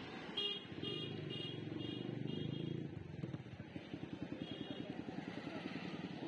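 Motor scooter engine running close by amid street traffic, with a rapid low putter in the second half. Over it, a series of short high beeps about twice a second during the first half.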